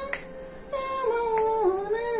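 A woman singing a hymn, holding long notes that step down in pitch after a brief pause just after the start. Two sharp clicks come through, one near the start and one past the middle, and the voice has the ring of a small tiled room.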